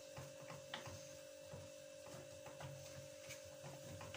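Faint scraping and light clicks of a metal spoon stirring béchamel sauce in a frying pan, over a steady hum.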